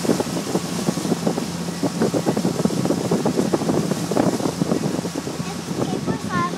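Small motorboat running at speed: a steady engine hum under heavy wind buffeting on the microphone and the rush of the wake.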